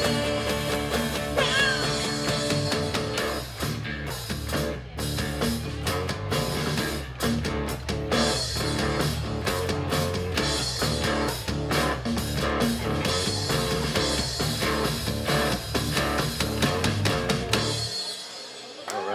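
Live band playing a song with guitar and drum kit at full volume, a steady beat throughout; the music stops sharply right at the end.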